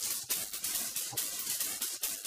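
Faint steady hiss with rapid crackling clicks, with no speech over it.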